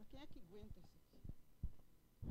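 Faint speech away from the microphone, with a couple of soft knocks near the end.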